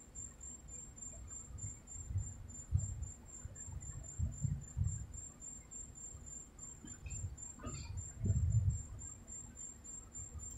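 A coin scratching the coating off a paper scratch-off lottery ticket on a table: soft, irregular rubbing strokes that grow stronger about eight seconds in. A faint steady high-pitched whine runs throughout.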